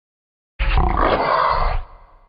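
Pig sound effect: one loud, rough pig call about a second long, starting about half a second in and trailing off at the end.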